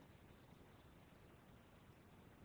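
Near silence: faint steady hiss of room tone.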